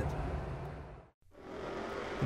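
Faint vehicle noise, a steady rush, fading out to silence about a second in and fading back up again.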